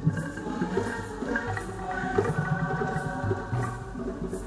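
Church hymn music during the offertory: a choir singing with instrumental accompaniment and a steady percussive beat.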